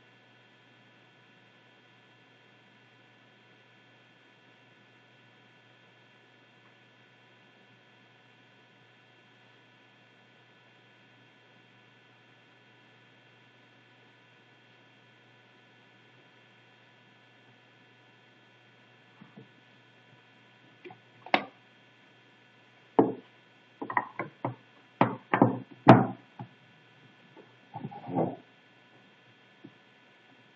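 Faint steady room hum, then from about two-thirds in a string of irregular clicks and knocks: a sewing machine being handled, with fabric set under its presser foot, while the machine is not running.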